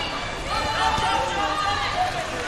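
Overlapping voices of many people in a large indoor sports hall, with shouts standing out over the general chatter.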